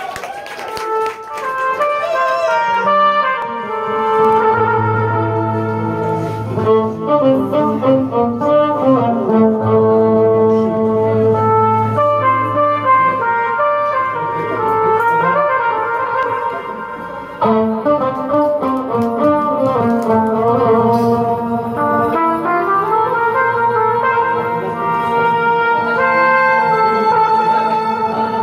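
Live Arabic ensemble music: bowed violin and oud playing a melody with sliding notes over sustained keyboard notes, with little drumming.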